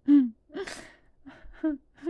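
A person's voice without words: a short voiced sound, then a loud breathy gasp about half a second in, followed by a few short voiced syllables.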